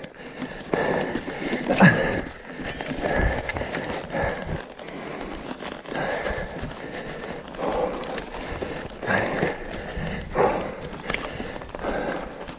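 Mountain bike tyres rolling over dry leaf litter, twigs and dirt on a forest singletrack, crunching and rustling unevenly, with scattered clicks and knocks from the bike over bumps.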